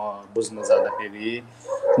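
A man talking, heard through a video call.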